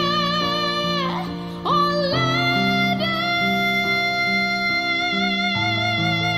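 A woman singing long, high held notes with vibrato over sustained low accompaniment chords; the phrase breaks off about a second in and a new note swoops up and is held.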